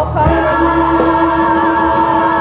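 Gospel church choir with a soloist singing, holding one long sustained chord.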